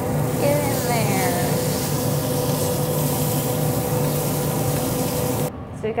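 Small beef steaks sizzling loudly as they sear in a very hot stainless-steel pan, with a steady hum and a held tone underneath. The sizzle cuts off suddenly about five and a half seconds in.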